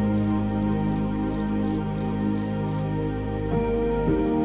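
Slow ambient background music with sustained keyboard-like tones. Over it runs a series of about nine short, high-pitched chirps, roughly three a second, which stop about three seconds in.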